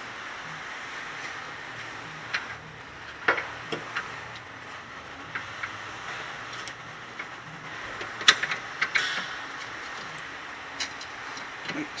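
Scattered light metallic clicks and taps of hand tools working at a car's lower control arm ball joint, the loudest about two-thirds of the way in, over a steady background hiss.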